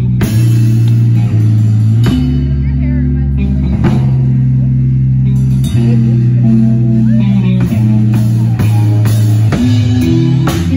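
Live rock band playing loud: distorted electric guitar and bass guitar holding heavy chords that change every second or two, over a drum kit.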